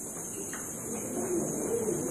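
A faint, low voice murmuring in a pause between louder speech.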